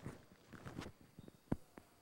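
Faint handling knocks and rustles from a microphone being set in place, with one sharp click about one and a half seconds in and a smaller one just after.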